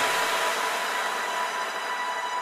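Dance music breakdown: the kick drum stops and a steady wash of white noise remains, with a few thin held tones, slowly fading.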